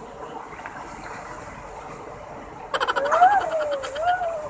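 Water of a small waterfall and shallow pool rushing steadily. About three seconds in, a louder rapid rattling with a wavering, voice-like tone over it lasts about a second.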